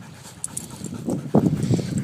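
A dog panting in quick, repeated breaths, starting about a second in.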